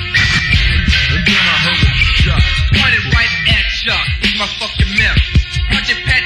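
Lo-fi early-1990s Memphis underground rap track: a male voice rapping over a beat with a heavy, pulsing bass.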